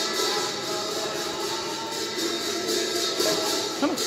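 Temple aarti music: sustained devotional singing or drone tones over steady, rhythmic, jingling metallic percussion.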